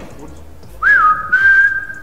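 A person whistling, starting about a second in: a quick upward flick and dip in pitch, then one long steady note.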